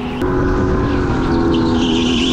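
Onboard sound of an electric go-kart at speed: a steady motor whine over rumbling tyre and chassis noise, getting a little louder shortly after the start.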